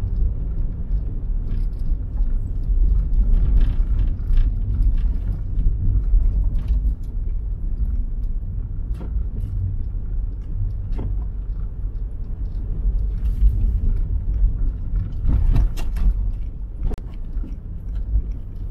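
Steady low rumble of a car driving slowly over packed, rutted snow, heard from inside the cabin, with scattered short clicks and knocks that cluster near the end.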